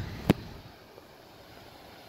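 A single sharp click about a third of a second in, followed by faint, steady outdoor background noise.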